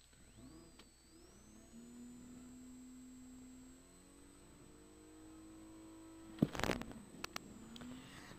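Faint in-car sound of a Volkswagen R32's VR6 engine running with a low steady hum while the car is held at the start line and then moves off, with a thin high whine that rises early on and then holds. About six and a half seconds in, a loud brief rush of noise, followed by a couple of clicks.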